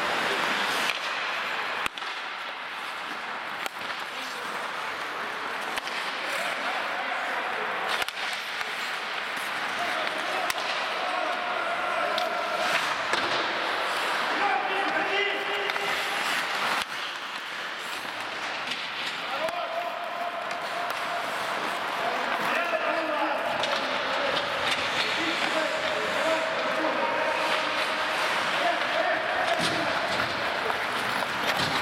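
Ice hockey play in an indoor rink: skates scraping on the ice as a steady hiss, with sharp clacks of sticks and puck against the boards. Players' shouts, several held calls, are spread through it, with echo from the hall.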